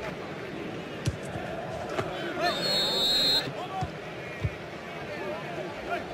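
Football stadium crowd noise, a steady mass of voices with some chanting. Several dull thuds of the ball being kicked sound through it. A shrill whistle is heard for about a second near the middle.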